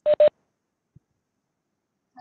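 Two short electronic beeps in quick succession, each a steady single-pitch tone, right at the start.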